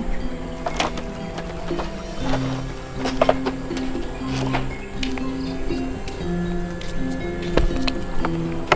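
Background music: sustained low notes that change every second or so, with a few light clicks.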